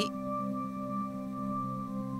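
Steady background drone of several sustained, unchanging tones: the binaural-beat track laid under the lesson.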